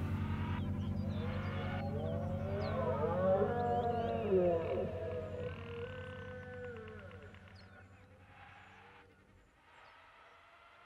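The close of a recorded music track: a low sustained drone with wailing, gliding creature-like calls over it, the 'dinosaurs' or 'beasts' in the background, fading out toward the end.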